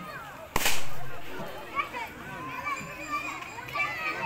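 A single loud, sharp crack about half a second in that dies away over about a second, heard over children's voices and chatter.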